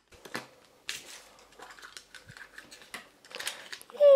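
A red plastic Kinder Surprise toy capsule being handled and pried open, giving scattered small plastic clicks and taps with a light crinkle of foil wrapper.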